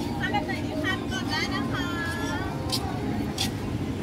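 Busy outdoor market crowd: nearby voices talking over a steady low rumble, with two short sharp clicks near the end.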